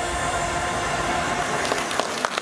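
The end of a pop song's backing music fading out under audience applause, with sharp individual claps standing out near the end.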